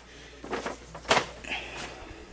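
A few light knocks and rustles from a plastic grocery bag and groceries being handled and set down.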